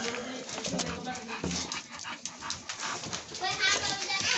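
Dogs playing on a tile floor: quick clicks and scuffles of claws and paws, with short dog vocal sounds.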